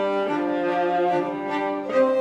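String quartet of two violins, viola and cello playing sustained bowed notes together, swelling into a louder entry near the end.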